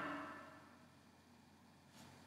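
Near silence: room tone, after a voice dies away in the first half-second.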